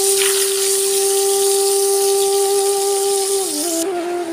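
A long held note of background music, like a wind instrument, stepping down in pitch near the end, over the steady hiss of food frying in oil in a wok; the frying hiss cuts off just before the end.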